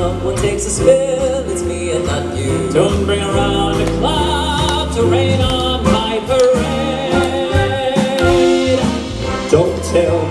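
Male vocal group singing a swing number with a live band of piano, upright bass, drums and brass, the bass stepping note by note underneath the held, wavering voices.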